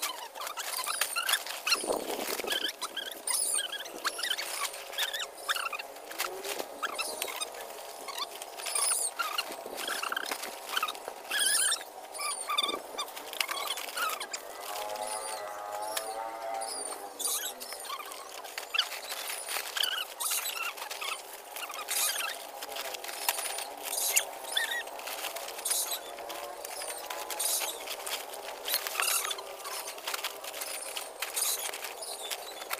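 Crinkling and rustling of a woven plastic sack and dry sticks being handled, a string of irregular short crackles.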